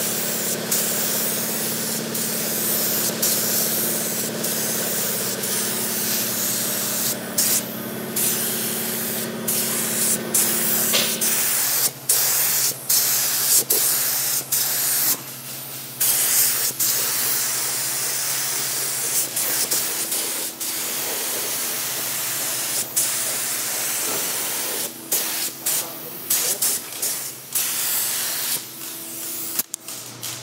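Compressed-air paint spray gun spraying flat black single-stage acrylic urethane paint: a steady hiss that cuts off and restarts many times as the trigger is released between passes. A steady low hum runs underneath.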